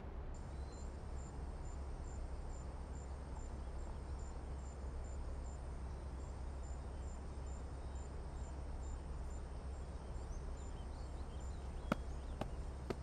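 High-pitched insect chirping, about two chirps a second and cricket-like, over a steady low hum and faint outdoor hiss.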